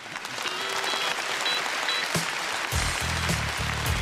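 Audience applauding over show music, with low bass notes coming in about three seconds in.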